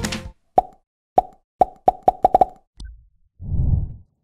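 Music cuts off just after the start, then a run of short pop sound effects from an animated end card, about eight of them, coming quicker near the two-second mark. A faint tick follows, then a low rumbling whoosh near the end.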